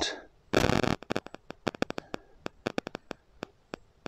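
A short rustle about half a second in, followed by a run of sharp, irregular clicks and crackles.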